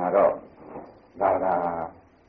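Speech only: a man talking in two short phrases, muffled, as in a narrow-band recording.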